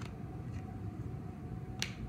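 Two sharp clicks, one at the very start and a louder one near the end, over a steady low hum.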